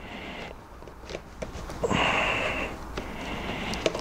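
Hands pushing cables into place under a motorcycle's plastic bracket: faint rustling and a few small clicks, with a short hiss about two seconds in.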